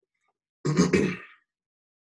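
A man clearing his throat once, a short, gruff, two-part sound lasting under a second, a little over half a second in.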